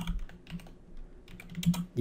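Computer keyboard typing: a scatter of key clicks, coming in a quicker run near the end.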